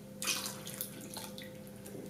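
A glass of milk poured into a mixer bowl onto the eggs, sugar and oil, a splashing pour that starts a moment in and is strongest in its first second, then runs on more softly.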